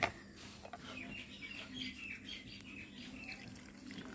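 Faint birds chirping in short, repeated calls.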